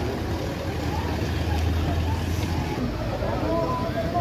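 Toyota Land Cruiser SUVs' engines running at low speed as they drive slowly in, a low rumble that is strongest in the first half.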